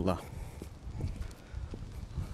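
Footsteps on paving while walking: a few soft steps roughly every half second, after a short spoken 'uh' at the start.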